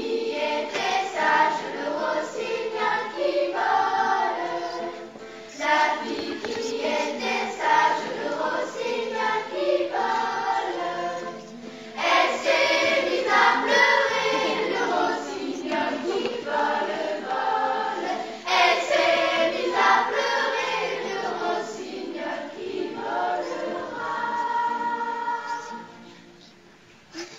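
Children's choir singing a song in phrases with short pauses between them, accompanied by acoustic guitar; the song ends just before the end.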